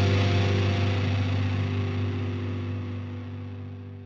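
The final chord of a thrash metal song, held by the band and ringing out, fading steadily away.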